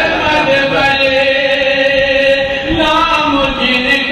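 A man reciting an Urdu nazm in a melodic chanting voice into a microphone, holding long, slowly bending sung notes with short breaks between phrases.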